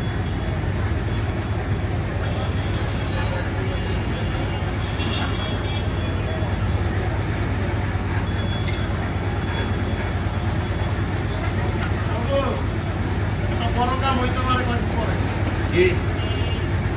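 Steady low background rumble like traffic noise, with indistinct voices heard about twelve seconds in and again near the end.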